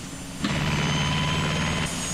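Cartoon sound effect of a helicopter engine as its power is increased: it comes in suddenly about half a second in and runs steadily, a low drone with a thin high whine, stopping just before the end.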